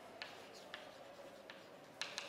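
Chalk writing on a chalkboard: faint scratching with a few sharp taps as the letters are formed.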